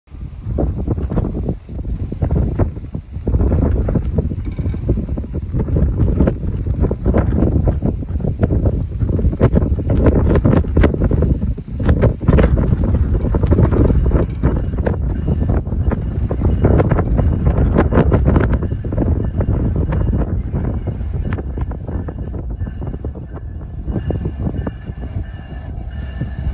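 Wind buffeting the phone's microphone, a loud gusty rumble with many short thumps throughout. Near the end, faint steady high tones from the approaching train come in.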